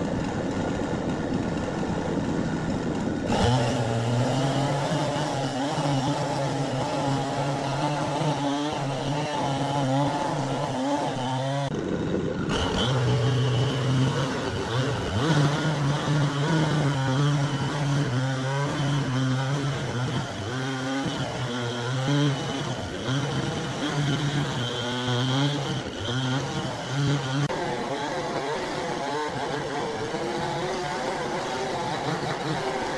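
Gasoline chainsaw running under load while cutting into a huge log. Its engine note repeatedly sags and recovers as the chain bites into the wood, with a brief break about twelve seconds in.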